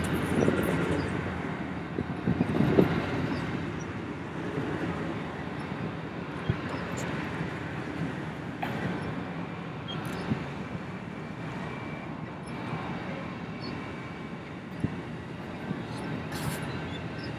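Amtrak Southwest Chief's bilevel Superliner passenger cars rolling past on the track, a steady rumble of wheels on rail with occasional sharp clicks, a little louder in the first few seconds.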